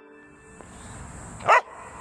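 A dog barks once, a short loud bark about a second and a half in.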